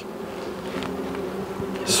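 Honeybee colony buzzing from an opened hive, a steady low hum.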